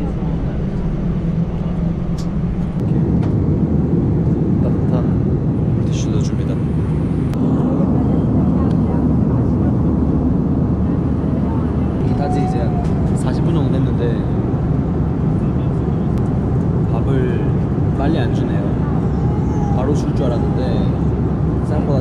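Steady low engine noise of an airliner heard inside the cabin, growing louder about three seconds in and again a few seconds later, with faint voices in the background.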